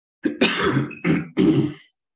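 A person coughing and clearing their throat, three harsh bursts in quick succession.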